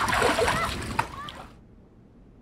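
Water splashing in a swimming pool, with voices calling out over it, fading out about one and a half seconds in to faint hiss.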